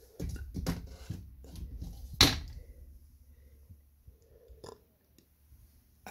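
Handling noise from a hand-held camera being moved: a low rumble and rustling with a few clicks, a sharp knock a little over two seconds in, then only faint small clicks.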